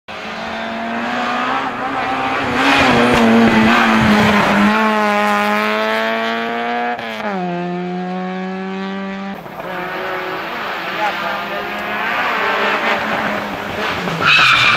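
Peugeot 106 hillclimb car's engine pulling hard at high revs, its pitch climbing through each gear and dropping sharply on upshifts about five and seven seconds in. From about nine seconds the engine is heard less clearly, mixed with more noise.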